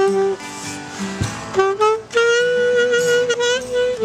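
Alto saxophone playing a melodic solo line: a few quick notes, a rising run, then one long held note through the second half, over quieter accompaniment.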